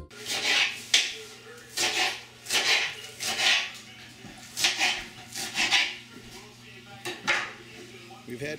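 Freshly harvested green onions and radishes being rinsed and handled in a stainless steel sink: irregular short bursts of splashing water and rustling, with a couple of light knocks against the metal.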